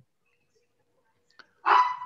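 Near silence, then about a second and a half in, a short loud dog bark.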